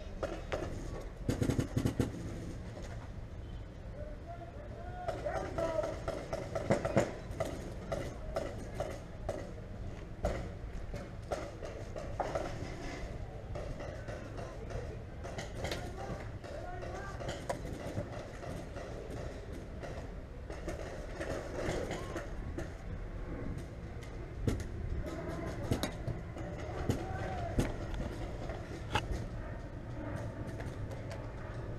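Indistinct shouting of distant players, with scattered sharp pops of paintball markers firing across the field. A cluster of louder pops comes about a second in.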